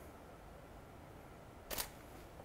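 A DSLR camera's shutter fires once near the end, a single short sharp click over quiet room tone.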